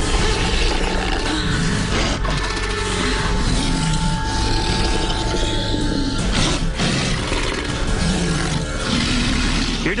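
A wolf growling and snarling over a tense dramatic film score with sharp musical hits.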